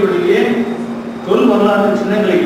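A man's voice over a microphone and loudspeakers, speaking in drawn-out phrases with some tones held steady, pausing briefly a little past the middle.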